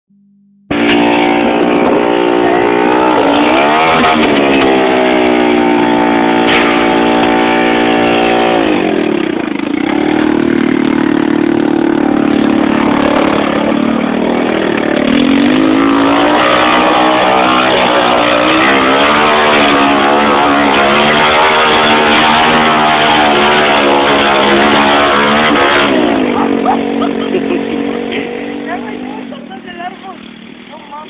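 2005 Honda TRX ATV engine revving hard while the quad spins donuts in dirt, its pitch rising and falling again and again. Near the end the engine drops back and gets quieter.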